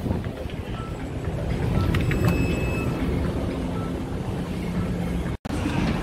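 Steady low rumble of background noise with wind on the microphone and a few faint thin tones over it. It cuts out completely for a moment near the end.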